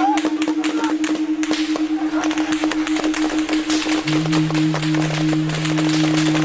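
A steady, slightly pulsing musical drone note, joined by a second, lower held note about four seconds in, over a dense, irregular run of sharp cracks and knocks.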